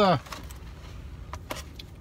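Low steady rumble inside a car's cabin, with a few faint clicks and taps as a foam cup is picked up and handled.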